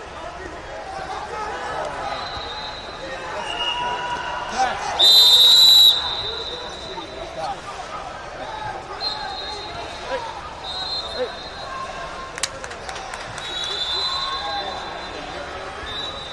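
A referee's whistle blown once, loud and about a second long, about five seconds in, stopping the wrestling. Fainter whistles from other mats sound at times over the murmur of voices in a large hall.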